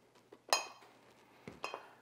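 Stainless steel mixing bowl clinked twice by a metal cheese grater, two sharp metallic clinks about a second apart, the first louder, each ringing briefly.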